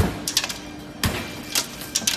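Sledgehammer striking a pane of high-security glass that is cracked all over but holds in its frame: two heavy blows about a second apart, with lighter knocks in between.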